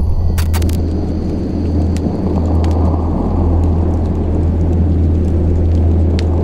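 A low, steady rumbling drone with a few faint clicks over it, the dark ambient lead-in of a heavy-metal track before the band comes in.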